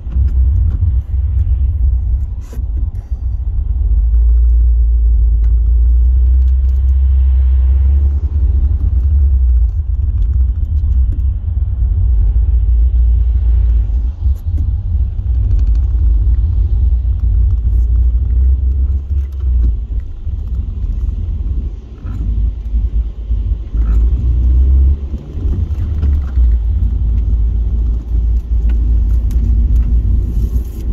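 Low rumble of a car driving in slow traffic, heard from inside the cabin, rising and falling slightly as it moves.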